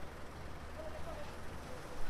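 City street ambience: a steady low traffic hum with faint, indistinct voices of passers-by.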